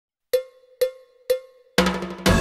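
Count-in on a small pitched percussion instrument: three evenly spaced strokes about half a second apart, each with a short ring, then the full band comes in on the next beat near the end.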